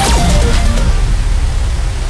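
Electronic music with a few descending notes, giving way to a loud hiss of static-like noise.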